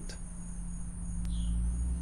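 Steady high-pitched drone of insects, with a low steady rumble underneath and a short falling chirp about a second in.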